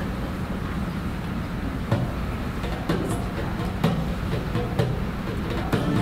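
A steady low room rumble with a few scattered soft knocks, then an acoustic guitar starts playing near the end.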